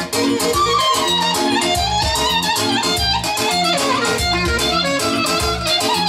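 Live dance music played loud through PA speakers: a steady bass beat on an electronic keyboard under a fast, ornamented lead melody with a violin-like sound, its notes sliding up and down.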